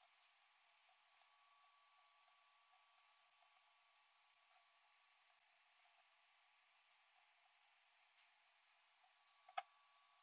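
Near silence: a faint steady hiss, broken by one short sharp click near the end.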